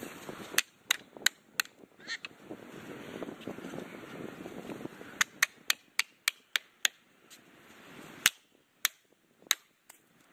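Felling wedges being hammered into the back cut of a large tree: sharp, cracking blows. Four come in quick succession near the start, a faster run of about seven follows about five seconds in, and three more spaced blows land near the end.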